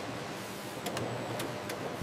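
Steady hiss of factory machinery with a few faint clicks about a second in.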